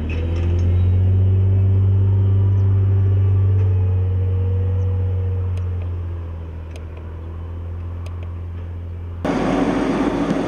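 Steady low drone of a tractor engine working with a Krone forage wagon at the silage clamp, with a faint tone above it that slowly rises and eases off after about five seconds. About nine seconds in it changes abruptly to louder, rougher engine and machinery noise.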